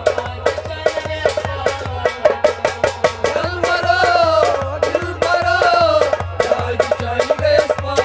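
Harmonium playing a melody over fast, steady hand-drum strokes in a folk song.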